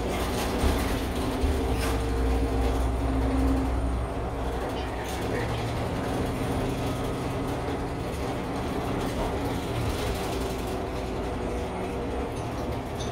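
Transit bus running, heard from inside the cabin: steady engine drone and road rumble with a few rattles and clicks from the fittings. The low rumble is strongest for the first few seconds, then settles lower.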